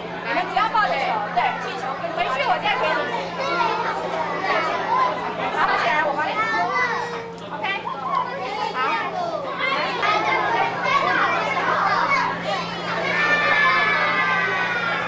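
A crowd of young children talking and calling out over one another, many voices at once, over a steady low hum.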